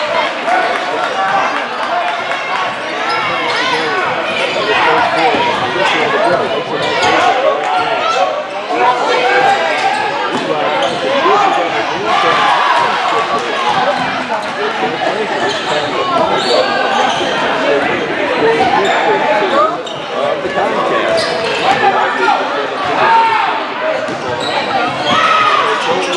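Basketball dribbling and bouncing on a hardwood gym floor during live play, amid constant overlapping shouts and chatter from players, benches and spectators in a large, echoing gym.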